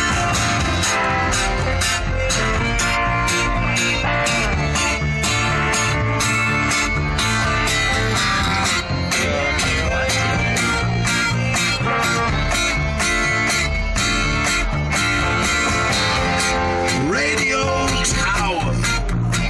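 Live band playing a song: guitars and accordion over a drum kit keeping a steady beat.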